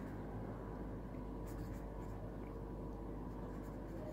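Pen writing on paper: a faint scratching as a word is written out by hand, over a steady low hum.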